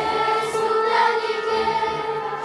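Children's choir singing, holding long steady notes.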